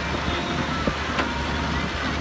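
Hydraulic excavator's diesel engine running steadily as the bucket digs into soil and lifts a full load, with two short knocks around the middle.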